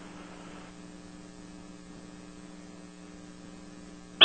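Faint, steady electrical hum of two low tones over a light hiss on a conference audio line, with no speech.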